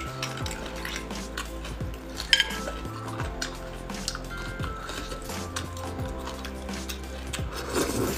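Clicks and clinks of braised beef marrow bones and a thin utensil being handled over a plate, with one sharper click about two seconds in, over background music.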